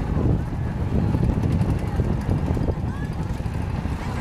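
Wind buffeting the microphone, a gusty low rumble, with faint short chirps and distant voices in the background.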